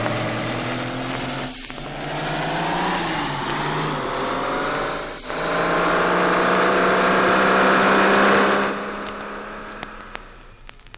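A stereo vinyl LP of 1967 budget TV-theme recordings playing: a buzzing, engine-like tone glides slowly upward in pitch over a steady low note, swelling louder, then dies away about nine seconds in. Record surface crackle and clicks are left near the end.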